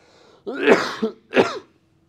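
A man coughing twice, the first cough, about half a second in, the louder.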